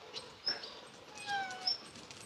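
A domestic animal gives one short whine that falls in pitch, a little past halfway. Faint bird chirps sound throughout.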